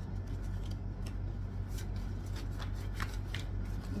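A deck of tarot cards being shuffled and handled: short papery riffles and flicks, scattered and more frequent in the second half, over a steady low hum.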